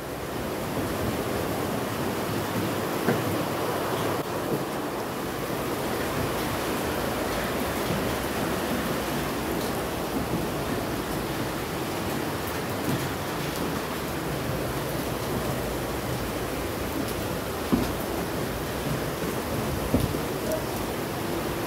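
A steady rushing noise, with a couple of faint knocks.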